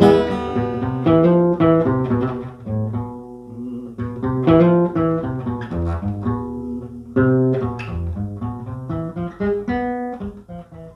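Acoustic guitar played by hand, picking a run of notes and chords that ring on between irregular plucks.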